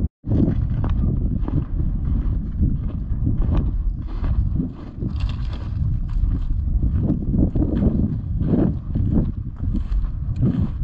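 Wind buffeting the microphone, with irregular footsteps crunching through dry grass and crusted snow.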